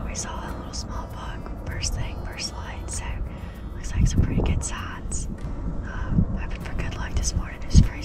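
A woman whispering to the camera, low and breathy, with sharp hissing consonants.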